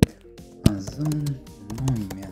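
Computer keyboard typing: a few sharp key clicks, the loudest near the start and just over half a second in, with background music and a short stretch of voice in the second half.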